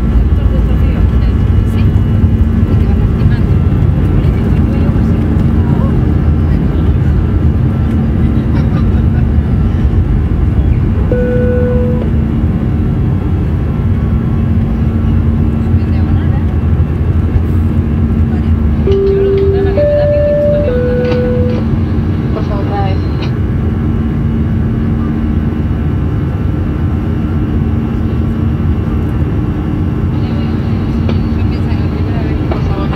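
Cabin noise of an Airbus A320-214's CFM56 engines at takeoff thrust, heard from a window seat over the wing as the jet leaves the runway and climbs: a loud, steady rumble with a low hum. Short electronic tones sound once about eleven seconds in and three times, at different pitches, around twenty seconds in.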